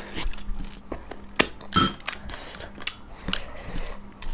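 Close-up eating sounds: chewing and wet mouth clicks as rice and chicken curry are eaten by hand, with two louder smacks a little under two seconds in.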